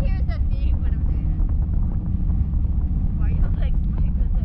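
Wind buffeting the microphone of a camera on a parasail rig high over the sea, a steady low rumble, with brief voices at the start and again about three seconds in.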